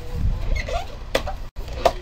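Handling of a cardboard helmet box: a low bump, then two sharp clicks about 0.7 s apart, over a steady low hum.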